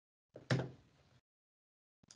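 A single short knock or thump about half a second in, heard through a video call's audio. The rest is gated to dead silence by the call's noise suppression.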